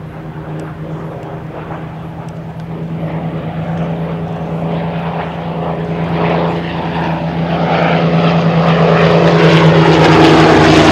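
The piston V-12 engines of a Supermarine Spitfire Mk IX (Rolls-Royce Merlin) and a Curtiss P-40 Warhawk (Allison) flying in formation, a steady engine drone that grows louder throughout as the pair approaches.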